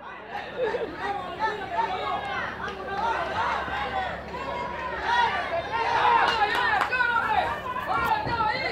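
Crowd of spectators talking and calling out around a boxing ring, many voices overlapping.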